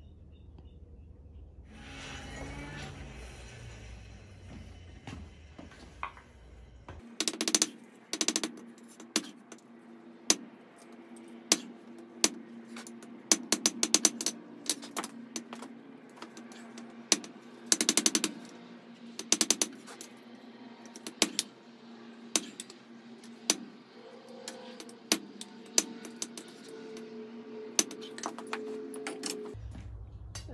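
Hand-hammer blows on a red-hot forge-welded mild-steel tube lying on an anvil, being hammered straight. The blows start about seven seconds in and fall irregularly, roughly one a second with some quick clusters. Background music plays underneath.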